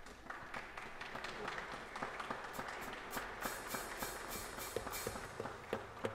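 Congregation applauding in a church sanctuary, many hands clapping steadily for several seconds.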